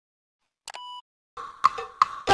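A single short electronic beep, a click followed by a steady tone held for about a third of a second, between stretches of silence. Faint clicks and tones start near the end.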